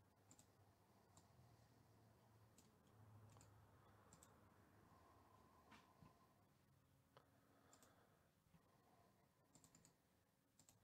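Near silence with faint, scattered computer mouse and keyboard clicks, a few seconds apart or closer, over a low steady hum.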